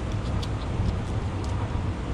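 Tip of a 9-inch flexible fillet knife cutting up through a black drum's scales along the back, giving a few faint scratchy ticks over a steady low rumble.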